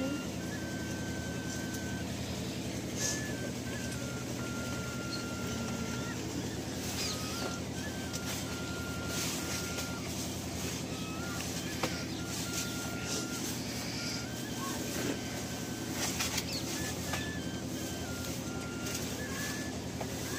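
Soft rustling and scraping of hands working flour and water into dough in a brass plate, over a steady low machine hum. A thin high tone steps between a few pitches in the background.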